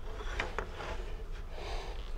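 Low, steady shop hum with a faint click or two about half a second in, as a miter gauge is handled and set against a board on the table saw's top; the saw blade is not running.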